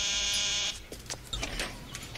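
Electric doorbell buzzing in one steady, unwavering tone that cuts off abruptly less than a second in, followed by a few faint clicks.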